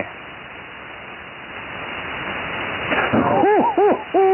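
Hiss of band noise on a 75-metre ham radio receiver between transmissions, slowly growing louder. Near the end a surge of static comes, and a weak voice starts to come up through it.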